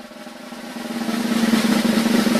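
A drum roll, most likely on a snare, growing steadily louder as a build-up.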